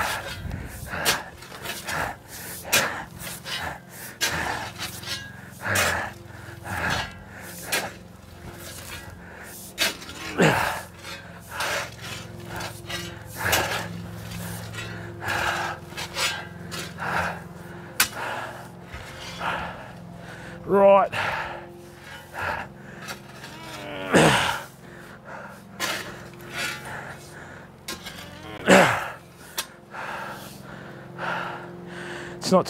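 Steel shovel scraping and chopping into loose garden soil, in irregular strokes about once a second, with a few short falling pitched sounds in the second half.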